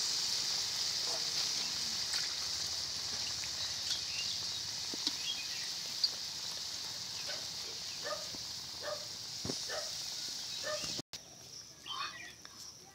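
Kofta curry simmering in a kadhai: a steady high sizzling hiss that slowly dies down as the gravy settles after a little water has gone in, with a few light pops. The sound cuts off abruptly near the end.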